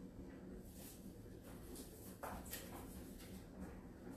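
Quiet room with a few faint rustles and light knocks of decorations being handled and set down. The most noticeable knock comes just over two seconds in.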